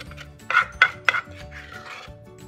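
A ladle knocked three times in quick succession against an earthenware mortar, then scraped around inside it, clearing out the last of the pounded curry paste.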